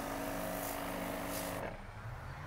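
A handheld weed sprayer spraying: a steady pump hum with hiss from the nozzle, which cuts off suddenly after about a second and a half.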